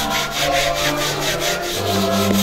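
Stiff-bristled plastic scrub brush scrubbing wet, soapy steps in quick back-and-forth strokes, about six a second.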